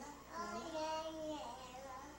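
A toddler singing a short wordless phrase, with one long held note in the middle that then falls away.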